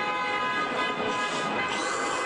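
A passing train: a loud, steady screech of several high tones over a rushing noise.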